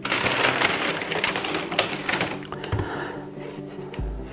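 Plastic bag and foam wrapping sheet rustling and crinkling as a fiberglass cowl is pulled out of them by hand. The crackling is dense for the first two seconds or so, then dies down to lighter rustles.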